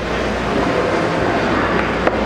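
A steady, loud rushing noise that swells up just before and then holds level, with a faint low hum under it.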